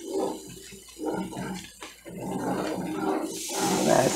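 Homemade flour-and-oil gravy being stirred with a spatula in a cast-iron skillet as it thickens, a wet, watery bubbling sound. A higher hiss comes in near the end.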